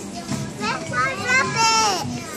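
A toddler's high-pitched voice vocalizing without clear words, in short rising and falling calls that grow louder, ending in one long note that falls in pitch.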